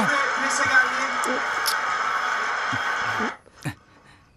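Crowd noise from a televised football match, a steady dense roar with voices over it, that cuts off abruptly a little after three seconds in, leaving near silence apart from a single short knock.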